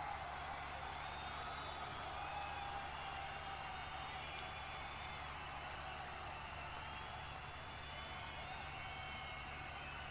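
Arena crowd ambience: a steady background of many distant voices with scattered shouts and calls, over a constant low hum.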